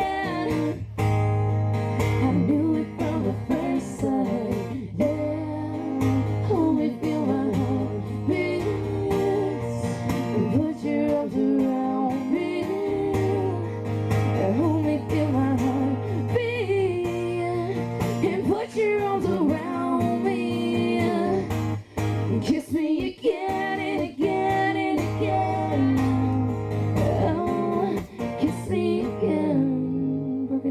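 Live acoustic song: a woman's lead vocal with a man's voice joining, over an acoustic guitar that is played with its high string broken.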